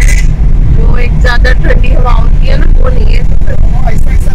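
Steady low rumble of road and engine noise inside a moving car's cabin, with voices talking over it.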